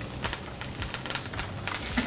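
Ribeye steak searing in smoking-hot oil and melting butter in a cast iron skillet: a steady frying sizzle thick with small crackles and pops.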